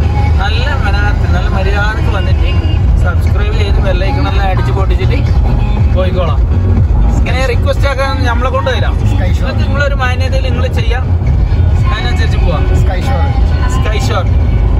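Steady low rumble of engine and road noise inside a moving vehicle's cabin, under a man talking.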